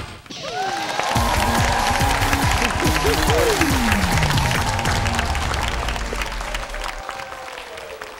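A crowd of children clapping and cheering over upbeat music, with a rising whoosh at the start and a long falling glide partway through; the clapping dies down about a second before the end.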